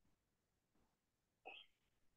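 Near silence, with one brief faint sound about one and a half seconds in.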